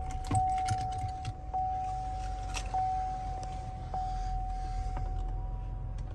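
Power sunroof motor running with a steady whine that stops about five seconds in, a slight tick recurring on it about every second. Sharp handling clicks and rattles are heard over it in the first few seconds.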